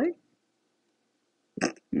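Speech only: a spoken word trails off at the start, then a pause with only a faint room hum, and talking resumes near the end.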